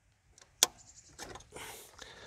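Hands handling hoses and fittings around a car's throttle body: one sharp click about half a second in, then a few light clicks and a short scrape near the end.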